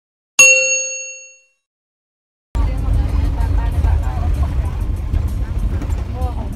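A single bright bell ding, the notification chime of a subscribe-button animation, rings out and fades over about a second. After a second of silence, the steady low rumble of a moving bus begins, heard from inside the passenger cabin.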